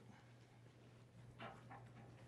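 Near silence: a low steady hum, with one faint brief sound about one and a half seconds in.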